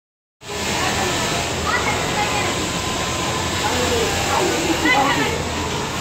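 Garment factory floor: a steady hum and hiss of machinery with several people talking indistinctly.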